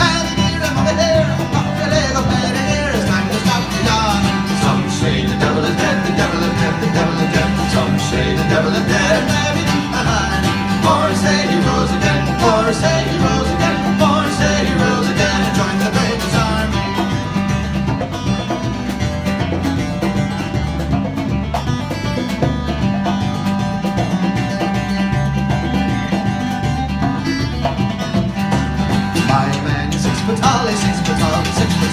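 Live Celtic-bluegrass band playing an Irish jig: fiddle leading the fast melody over strummed acoustic guitar, electric guitar and congas, with a steady bass line underneath.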